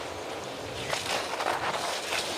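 Downhill racing skis running at speed over hard, icy snow: a steady hiss of the edges scraping, with a few faint sharper scrapes.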